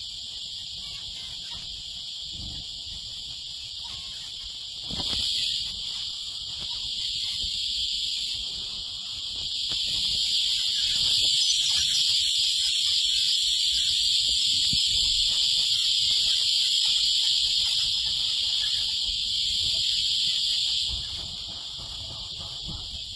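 A dense, steady, high-pitched twittering chorus from a flock of aviary finches, Gouldian finches among them, feeding at a seed dish. It swells briefly about five seconds in, grows louder about ten seconds in, and drops back near the end.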